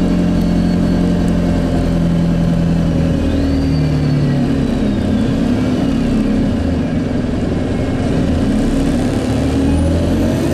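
Bus engine and drivetrain running as the bus drives along, a steady drone that changes pitch about three to four seconds in. Over it there is road noise and a high whine that rises, then slowly falls away.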